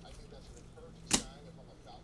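A single brief, sharp handling sound about a second in as gloved hands move trading cards and a clear plastic card holder on the table, over faint background talk.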